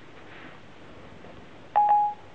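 Siri's electronic chime on an iPhone 4S: a single brief steady beep, with a click at its start, near the end.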